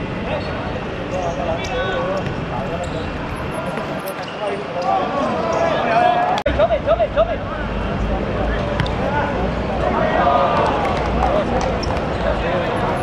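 Players' voices shouting and calling out during a football match on a hard court. A run of loud shouts comes about six and a half seconds in.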